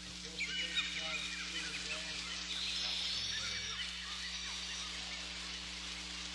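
Birds chirping in quick short calls over a steady low hum, busiest in the first few seconds.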